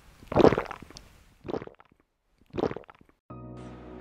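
Intro sound effects: three short bursts of noise about a second apart, then a steady musical tone that starts near the end.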